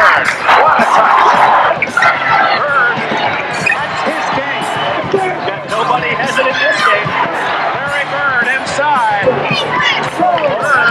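Basketball game sound: a crowd in an arena and a ball bouncing on the court, with voices and music mixed underneath.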